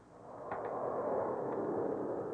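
Spaceship rocket-engine sound effect: a rushing hiss that swells in over the first half-second, holds steady, and starts to fade near the end.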